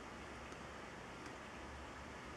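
Faint steady hiss with no distinct events: room tone.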